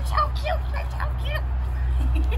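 Five-month-old Weimaraner puppy giving a quick run of short yips and whines while jumping up at a person.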